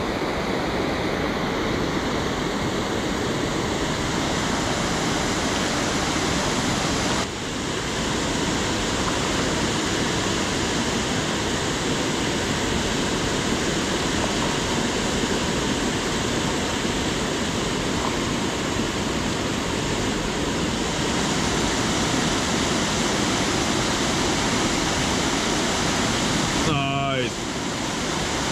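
Water pouring over a dam spillway: a steady, loud rushing, with a brief drop about seven seconds in.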